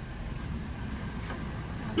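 Low, steady rumble of a passing motor vehicle that swells slightly about half a second in.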